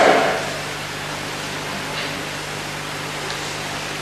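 A pause in a man's speech filled by steady hiss and a faint low hum, the background noise of an old 1980s video recording.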